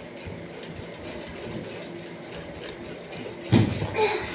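Steady low background rumble, then one loud thump about three and a half seconds in.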